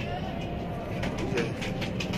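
Domestic pigeons cooing softly in the loft, a couple of short low coos over a steady low background.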